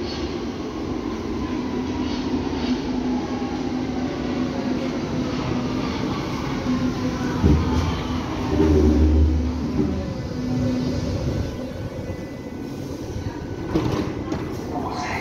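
Berlin U-Bahn train pulling into an underground station and braking, its motor whine sliding down in pitch as it slows over a steady hum. A heavy low rumble comes about seven and a half seconds in and again about a second later.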